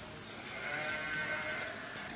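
A sheep bleating once, a faint, drawn-out call lasting over a second.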